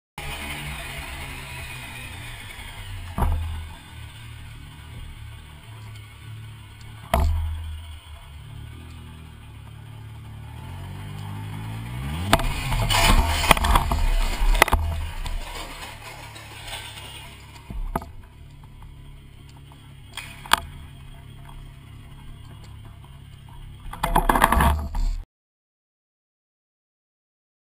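Slowed-down helmet-camera sound of a Triumph Sprint GT motorcycle going down and sliding, deep and drawn out: a low rumble with single heavy knocks now and then, and a loud stretch of scraping and clatter in the middle. It cuts off suddenly shortly before the end.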